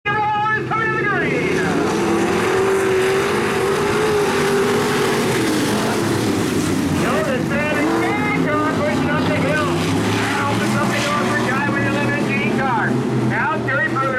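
Several dirt-track stock car engines running hard together as the pack goes round the track, their pitch rising and falling. A voice talks over the engines at times.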